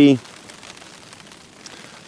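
Light rain falling, a steady soft hiss with faint scattered patter.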